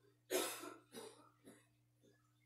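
A person coughing three times in quick succession, the first cough loudest and the next two weaker, over a steady low hum.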